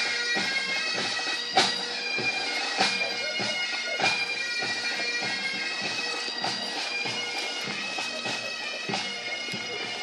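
Bagpipes playing a march, steady drones under the melody, with a regular beat of strikes about every 1.2 seconds.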